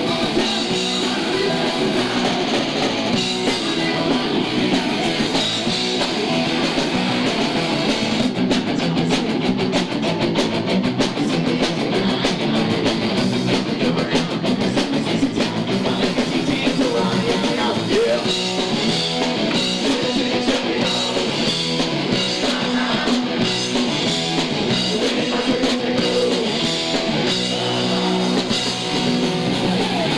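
Punk rock band playing live: electric guitar and drum kit going without a break.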